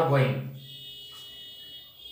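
A man says one short word, then a faint, steady high-pitched whine holds for about two seconds until speech resumes.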